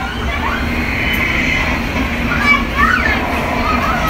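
Children's high voices calling out and squealing a few times, over a steady, loud background rumble with a constant low hum.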